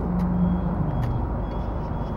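Steady low vehicle-like hum that fades out about a second in, over a steady outdoor background rumble, with a few faint light clicks.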